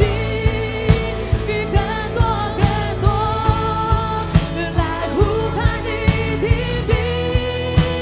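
Christian worship song: sung melody over a steady drum beat and sustained bass, about two beats a second.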